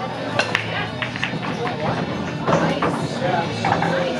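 Indistinct background conversation in a pool hall, with music playing faintly under it and a couple of sharp clicks about half a second in.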